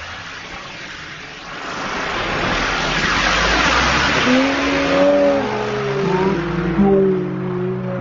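A 'drone' firework, a spinning fountain cracker that lifts off, fizzing as it burns: the hiss builds a second or so in, is loudest in the middle and fades as it climbs away. Several wavering tones that slide up and down join the hiss in the second half.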